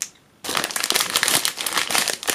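Plastic wrapper of a watermelon ice bar crinkling as it is torn open and pulled off by hand. The crinkling starts about half a second in and runs on busily.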